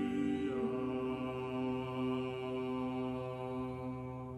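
A small vocal ensemble singing Renaissance polyphony, holding a long sustained chord. One voice moves about half a second in, and the chord begins to fade near the end, ringing on in the church's reverberation.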